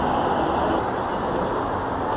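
Steady hum of city traffic, with no distinct events standing out.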